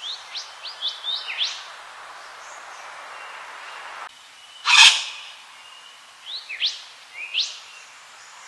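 Wattlebird calling: a quick run of short up-slurred notes, then a single loud harsh burst about five seconds in, then a few more rising notes near the end.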